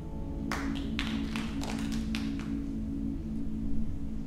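A handful of scattered handclaps, about ten sharp separate claps over two seconds starting half a second in, as the choir's last held chord ends. A low steady hum runs underneath.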